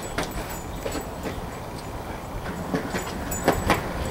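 Skateboard wheels rolling over concrete: a steady low rumble with scattered clicks and knocks, several close together near the end.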